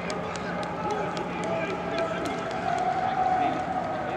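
Football practice chatter: several players and coaches calling and talking over one another, with scattered short, sharp clicks and claps.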